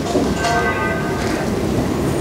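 Steady hiss of room noise, with a faint held tone of a few steady pitches from about half a second in until near the end.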